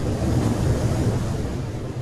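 Rumbling whoosh sound effect for an animated logo reveal: a deep, noisy rush that swells, peaks about a second in, then begins to fade.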